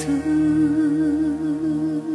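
The closing bars of a karaoke pop ballad: a voice holds one long hummed note with an even vibrato over sustained accompaniment chords.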